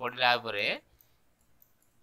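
A man's voice for under a second, falling in pitch, then near silence with a few faint clicks.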